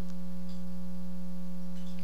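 Steady electrical hum in the sound system: a low, unwavering buzz with one strong tone and fainter overtones above it, carrying on unchanged under the pause.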